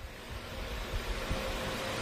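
Steady hiss of open-microphone background noise, with a low rumble and a thin steady hum beneath it.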